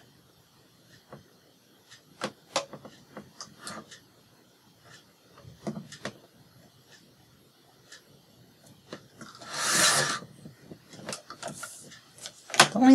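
Paper being handled with scattered light taps and rustles, then a paper trimmer cutting through paper in one stroke just under a second long, about ten seconds in.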